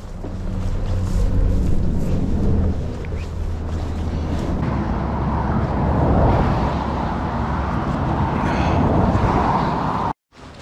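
Road traffic on the highway alongside: passing cars make a continuous low rumble and tyre hiss that swells around the middle and again near the end.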